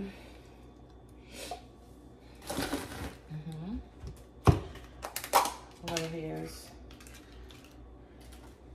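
Kitchen handling noises at a counter: a short rustle, then a sharp knock about halfway through, the loudest sound, and a second knock soon after, as things are set down. Brief wordless voice sounds come in between.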